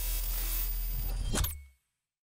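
Glitchy electronic logo sting: a dense static-like hiss over a deep low rumble, with a fast sweep near the end, cutting off abruptly about three-quarters of the way through.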